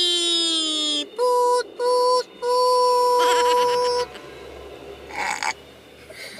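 A person's voice holding a long 'wee' that slowly falls in pitch, then three hoots at a steady pitch, two short and one longer.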